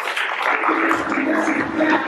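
Audience applauding in a hall, with music playing underneath.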